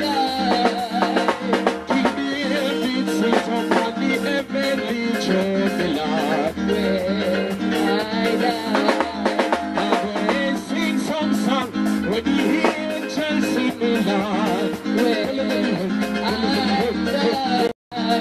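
Live band music from bass guitar and drum kit, with a man singing into a microphone. The sound cuts out for a moment near the end.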